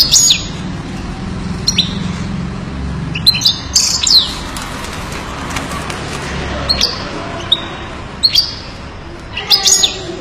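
European goldfinch giving short, sharp call notes and brief twittering phrases, spaced a second or two apart, with a quicker run of notes near the end.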